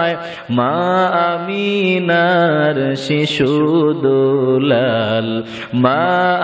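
A man chanting a devotional naat in praise of the Prophet, holding long melismatic notes that bend up and down in pitch. There is a short break in the line about half a second in and another just before the end.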